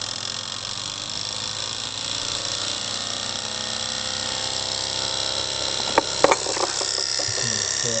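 Twin-cylinder model Stirling engine running on two alcohol-burner flames, a steady mechanical whirr and rattle of its spinning flywheel and linkages that grows slowly louder. A couple of sharp clicks come about six seconds in.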